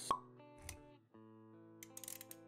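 Intro jingle: a sharp pop just after the start, a short low thump about a third of the way in, then plucked-string music with held notes picking up after a brief gap.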